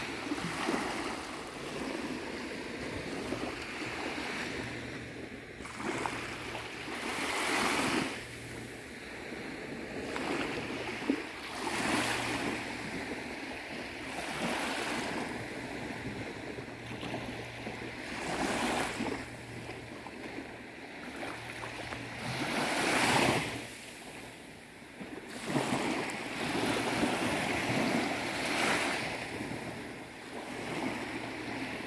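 Small waves breaking and washing up on the beach, the rush of surf swelling and falling away in surges a few seconds apart.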